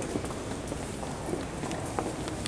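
Footsteps amid steady room noise.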